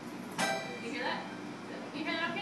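Toy piano being played, the opening notes of a short tune: bright, struck tones with a sharp attack that ring briefly. The first and loudest note comes about half a second in, and more notes follow.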